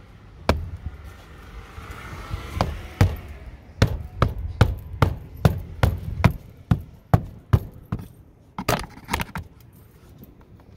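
Sharp taps on a hard surface. A few scattered strikes come first, then an even run of about two and a half taps a second, and a quick burst of taps near the end.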